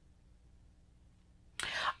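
Near silence: room tone, then about one and a half seconds in a short breathy voice sound, like a breath or whisper, lasting about half a second.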